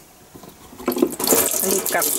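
Water running from a hanging push-rod washstand over a hand and splashing into the sink below, starting about a second in.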